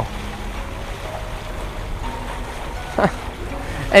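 Sailboat under engine at sea: a steady low rumble of the motor and water, with wind on the microphone. A brief falling voice-like sound about three seconds in.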